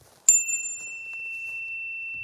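Tuning fork struck once, about a quarter-second in: a bright metallic strike whose higher overtones die away within about a second, leaving a single steady high-pitched tone ringing on.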